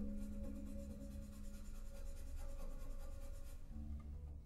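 Quiet passage of live contemporary ensemble music: a soft, fast, even pulse of short noisy strokes, while a low bowed string note fades out at the start.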